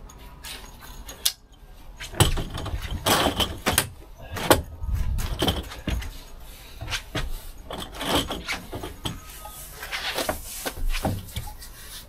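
Metal frame of a Trekology folding camp chair clicking and rattling as its poles are pushed into their last stops, with irregular knocks and clacks as it is set up and sat in.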